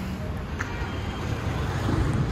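Steady road traffic noise, with a car driving past.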